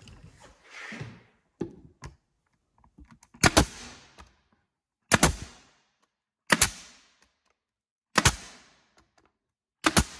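Pneumatic stapler fired into wood five times, about a second and a half apart, each shot a sharp crack with a brief fading tail. Light handling knocks come first, as the wood is set in place.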